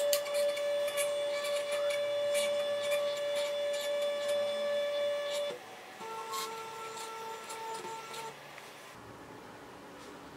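The coil machine's NEMA 17 stepper motors start with a click and run at constant speed with a steady whine for about five and a half seconds. After a short break they run again at a lower pitch for about two seconds, stopping a little after eight seconds.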